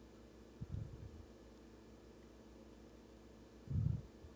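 Quiet steady low hum with two soft, deep thuds, one about a second in and a louder one near the end, as a hand touches and handles the laser-cut leather strip on the metal honeycomb bed.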